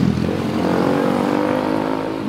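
A motorcycle engine running, its pitch rising gently while the sound slowly fades.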